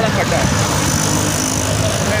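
Road traffic, with the low steady rumble of passing vehicles' engines, a bus among them. A faint high whine sits over it through the middle.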